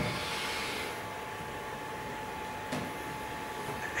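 Quiet room tone: a steady low hiss with a faint thin tone running through it, and one small click about three seconds in.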